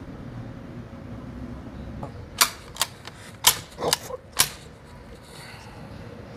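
Shotgun being handled and its action worked: a run of about six sharp metallic clicks and clacks in the second half, over a low steady room hum.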